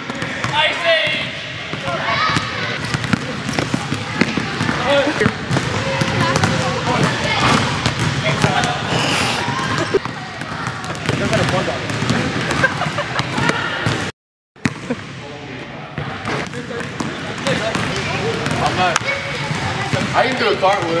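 Basketballs bouncing on a hardwood gym floor amid overlapping children's voices and shouts. The sound drops out to silence for about half a second around fourteen seconds in.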